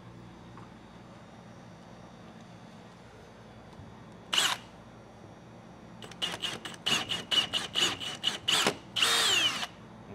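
Cordless drill boring into sheetrock, run in one short burst and then about a dozen quick trigger pulses, ending in a longer run whose pitch falls as it stops. The bit finds no stud behind the wall.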